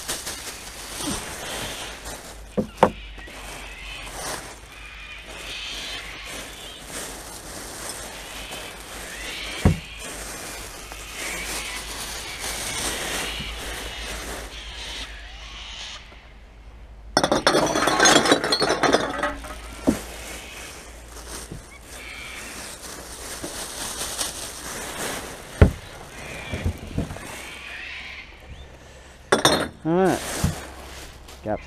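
Plastic rubbish bags rustling as they are rummaged through in a wheelie bin, with occasional sharp knocks. Just past the middle, about two seconds of glass bottles clinking and clattering.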